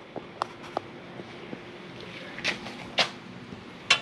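Quiet room tone with a faint steady hum, broken by a few light clicks and two short rustles in the second half.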